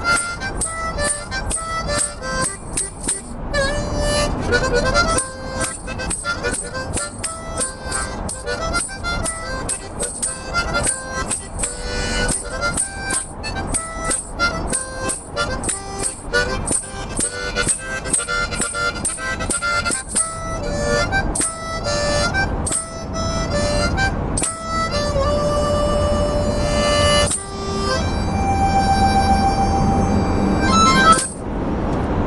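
Harmonica played solo in quick rhythmic pulses, moving into longer held notes in the last few seconds.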